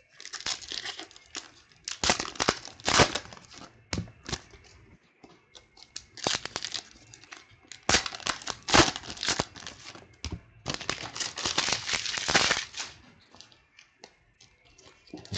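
Foil wrappers of 2014 Panini Prestige football card packs crinkling and tearing open, with trading cards rustling and sliding in the hands. The sound comes in five bursts of a second or two each, with short quiet gaps between.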